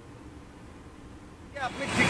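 A quiet pause with only a faint low hum, then street traffic noise comes in about one and a half seconds in, with a man's voice starting near the end.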